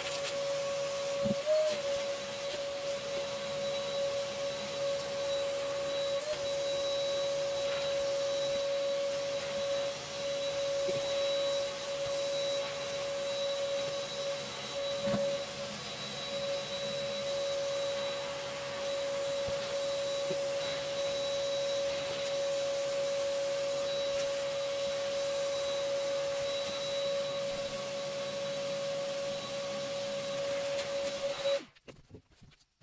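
Vacuum running with a steady whine, its hose sucking leftover yellow jackets and scraps of paper nest off the bottom of a plastic bin, with a few brief knocks as debris is pulled in.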